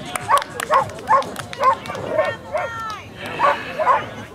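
A dog barking repeatedly in short, high yips, about two to three a second.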